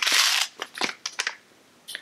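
A holographic plastic pouch being handled and pulled open: a loud crinkling rustle in the first half-second, then a few sharp clicks and crackles, and one more click near the end.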